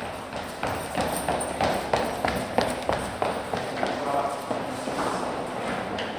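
Quick, hard steps clattering on a firm surface, about three to four a second, with a short voiced sound about two-thirds of the way through.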